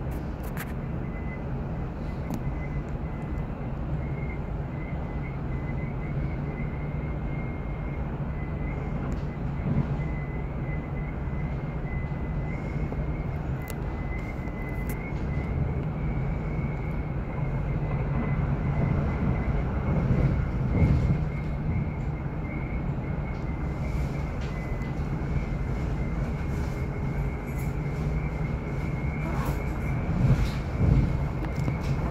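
Passenger train running at speed, heard from inside the carriage: a steady low rumble with a thin steady high whine and occasional faint clicks.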